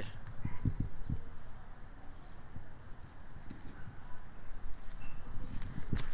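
Soft low thumps from walking with a handheld phone, bunched in the first second, then a faint steady outdoor rumble.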